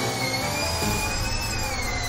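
A machine's steady high-pitched whine, drifting slowly up and down in pitch, over a low hum.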